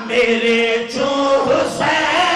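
Several men chanting together in a Shia majlis elegy, holding long sung notes; the held note changes pitch about a second in, with a brief break before the chant resumes near the end.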